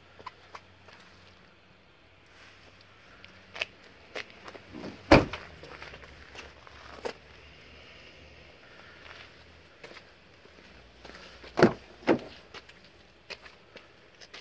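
A Toyota Camry Hybrid's trunk lid shut with a single sharp slam about five seconds in, with footsteps on pavement around it. Near the end a rear door's handle and latch clunk twice as the door is opened.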